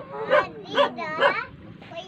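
A dog barking three times, about half a second apart.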